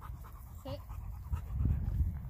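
Rottweiler panting, with a low rumbling noise underneath that grows louder near the end.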